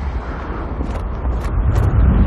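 Deep, low rumble from a horror film's sound effects, growing louder, with a few brief high crackling hisses from about a second in.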